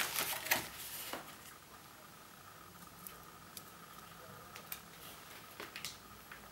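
Small, light clicks and taps of tiny metal contact pins and the plastic body of a PGA ZIF socket being handled and fitted by hand with a fine tool. A few sharper clicks come in the first second, then only sparse faint ticks.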